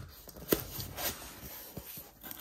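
Corrugated cardboard box being opened by hand: a sharp snap about half a second in as the tuck flap pulls free, then softer scraping of cardboard with a couple of small knocks.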